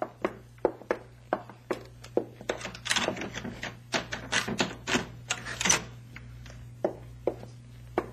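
Radio-drama sound effect of footsteps on a hard floor, about two to three steps a second, with a denser flurry of sharper clicks and knocks in the middle and two more steps near the end.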